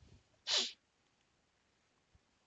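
A person sneezing: one short breathy burst about half a second in.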